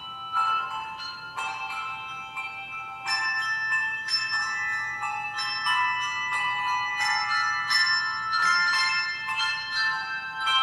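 Pre-service music of struck bell tones playing a slow melody, each note ringing on under the next, several sounding together.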